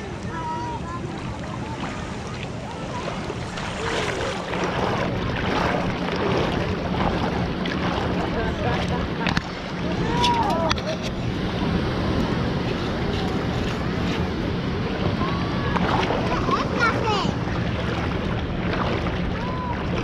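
Water sloshing around wading feet in shallow water, with steady wind noise on the microphone and a few short, high, chirp-like tones.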